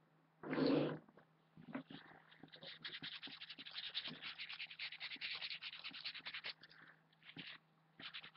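Quick, light rustling and clicking of small items being handled and rummaged through, a dense run of tiny crackles for a few seconds, after a short burst of noise about half a second in. A faint steady low hum lies underneath.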